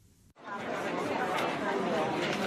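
Crowd chatter in a large indoor hall, many overlapping voices with no single speaker standing out. It starts abruptly about a third of a second in, after a moment of near silence.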